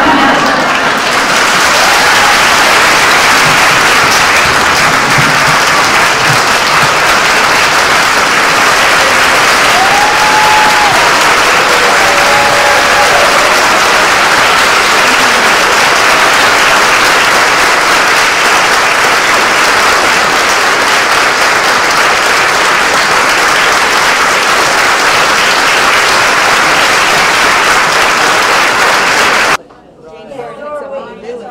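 Audience applauding, loud and steady throughout, cutting off suddenly near the end.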